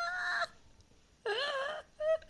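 A voice making long, drawn-out wordless calls: one held on a steady pitch that cuts off about half a second in, then after a short gap a shorter call that wavers in pitch.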